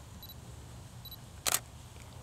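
Canon DSLR taking a single shot: two faint short high beeps, then one sharp shutter-and-mirror click about a second and a half in.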